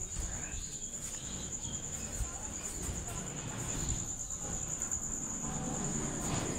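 A cricket's steady, high-pitched trill, fainter in the second half, over low rumbling handling noise.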